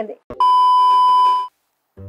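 A single steady electronic bleep, added in the edit, lasting about a second and drowning out the speech under it, as a censor bleep does.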